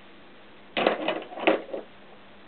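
A short cluster of metal clinks and rattles starting about a second in and lasting about a second: a socket and wrench being handled on the shaft bolt of an opened Honda CX500 engine.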